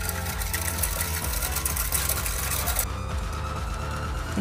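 A wire whisk ticking rapidly against the inside of a stainless steel saucepan as a pandan coconut-milk cornstarch batter is stirred continuously while it cooks and thickens. The ticking stops about three quarters of the way through, over steady background music.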